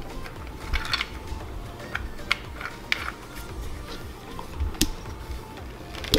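Plastic parts of a cup-holder phone mount clicking and scraping as the gooseneck is pushed and worked into the cup-holder base, with a handful of sharp clicks spread over a few seconds. Quiet background music plays under it.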